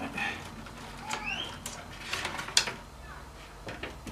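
Sharp plastic clicks and handling noise as cable connectors are worked into a computer case. Short bird-like whistles come in among them: a brief one at the start and a rising one about a second in.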